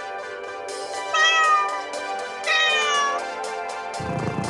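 Two cat meows, about a second apart, each sliding down in pitch, over light background music.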